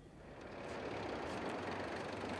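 Ambulance van driving up a street: engine and tyre noise swelling over the first second, then steady.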